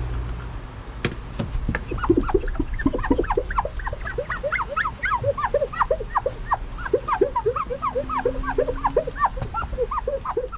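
Fast-forwarded audio of a rag wiping window glass: a rapid run of short chirping squeaks, three or four a second, each a quick arch in pitch.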